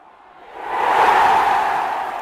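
A whoosh sound effect for an outro logo reveal: a rushing swell that builds from about half a second in, peaks around a second, then slowly fades.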